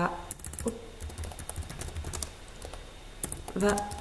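Typing on a computer keyboard: a run of quick key clicks that thins out after about two seconds.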